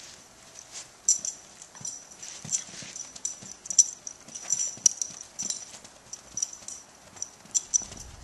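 Toy poodle dancing about on her hind legs: an irregular patter of light clicks and taps, each with a high metallic jingle, several a second.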